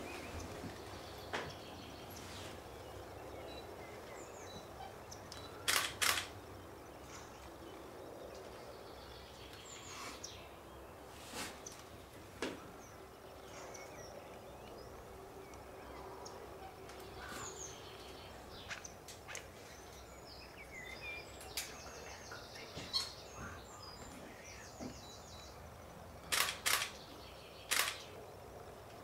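Camera shutter clicking a few times, mostly in quick pairs, over a quiet outdoor background with faint bird chirps.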